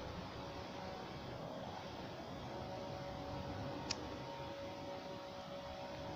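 Steady outdoor street background noise with faint steady hums, and one sharp click about four seconds in.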